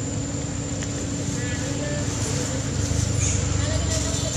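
Steady low rumble with faint, indistinct voices.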